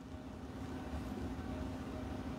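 Room tone: a low, steady hum and rumble with one faint steady tone, growing slightly louder over the couple of seconds.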